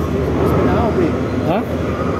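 Steady low mechanical hum of a cable-car (gondola) station's machinery, with people talking over it.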